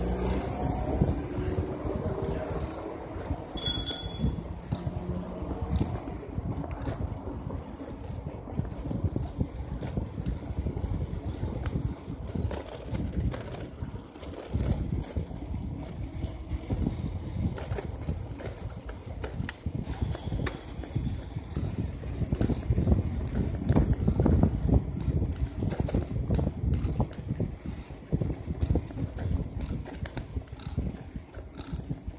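Continuous low rumbling and rustling noise with scattered clicks. A single short, bright metallic ring comes about four seconds in.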